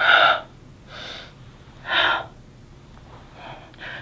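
A man's audible breaths through an exercise movement: a loud breath at the start, a softer one about a second in, and another loud one about two seconds in. The breaths are paced to the reach-and-pull move, which is done as a two-breath movement.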